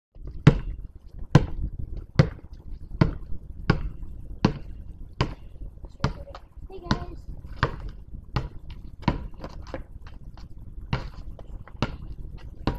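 A basketball being dribbled, bouncing about once every 0.8 s at first, then in a less even rhythm with a few quicker bounces. A person's voice is heard briefly around the middle.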